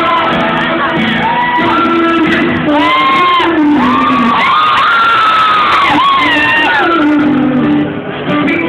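Live acoustic pop performance: a male singer singing into a microphone over acoustic guitar, with high voices in the crowd close to the microphone singing and shouting along loudly.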